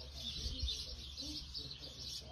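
Many small songbirds chirping together in a continuous, busy chorus.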